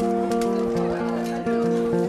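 Background music: sustained chords held for about a second each, then moving to new notes.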